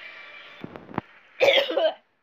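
A person coughing once, loudly, near the end, after two faint clicks.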